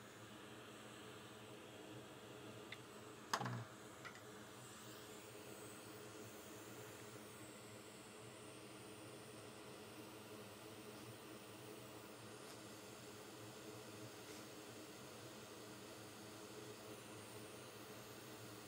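Near silence: a faint steady hum of room tone with a few small clicks, the loudest a short sound about three seconds in.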